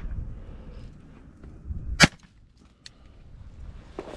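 A single pistol shot fired at close range into the dry grass, about halfway in, sharp and loud. A much fainter click follows a moment later.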